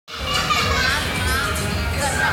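Young children playing and calling out, their high voices rising and falling, over a steady low hum.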